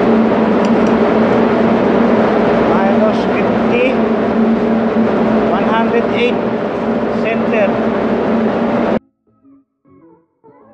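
Loud, steady machinery noise of a ship's engine room, a diesel generator running with a constant hum. It cuts off abruptly about nine seconds in.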